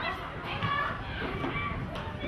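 Children's high voices shouting and calling out on a football pitch during play, over a steady low background rumble.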